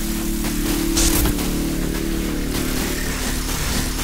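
Noisy electronic music: a steady wash of static-like hiss over held low synth tones, with a brief bright burst of hiss about a second in.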